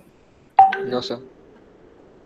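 A person's voice briefly saying "no, sir" over a video call, starting about half a second in.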